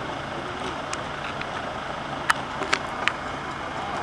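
Steady low hum of idling emergency-vehicle engines, with four sharp clicks, the loudest about halfway through, and faint voices in the background.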